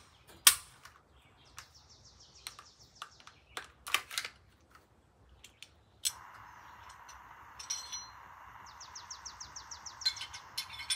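Sharp metallic clicks and clacks of a Glock 20 pistol being field-stripped, its slide taken off to swap the barrel. The loudest click comes about half a second in and a cluster follows around four seconds. A bird trills in the background, and a steady hiss sets in about six seconds in.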